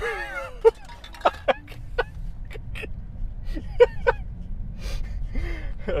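A man laughing in short, breathy bursts, over the low steady road noise inside a Tesla Model 3's cabin.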